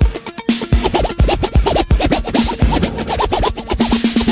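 Old-school electro hip-hop track with turntable scratching over a beat with heavy kick drums. The quick back-and-forth scratches run from about half a second in until near the end.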